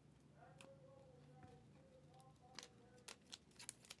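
Near silence, with a few light sharp clicks in the second half from trading cards being handled at the table.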